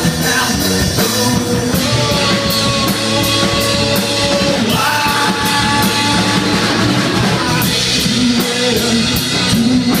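Live rock band playing loudly: two electric guitars, electric bass and a drum kit with steady cymbal strokes, and a man singing, with long sustained notes over the band.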